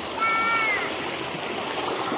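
Shallow stream running steadily over rocks. About a quarter of a second in, a short high-pitched call, under a second long and falling slightly at its end, rises over the water.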